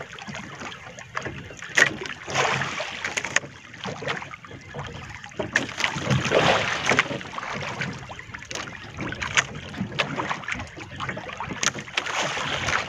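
Sea water lapping and sloshing against the hull of a small drifting outrigger boat, swelling and easing in waves. Wind noise on the microphone and a few sharp knocks are mixed in.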